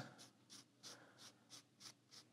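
Faint rubbing strokes, about five in quick succession, of a cloth wiping black spirit stain onto a rosewood fretboard.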